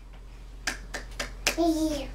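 Four quick hand claps, evenly spaced, followed near the end by a short voice sound that falls slightly in pitch.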